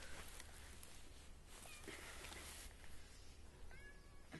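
A person breathing softly and slowly, with two long, airy breaths, and a few faint bird chirps near the end.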